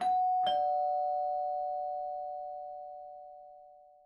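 Doorbell chime ringing a two-note ding-dong, a higher note then a lower one about half a second later. Both notes ring on together and fade slowly.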